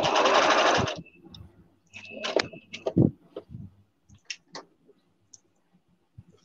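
A sewing machine running a short burst of stitches for about a second, then a shorter burst about two seconds in, with scattered clicks and knocks between.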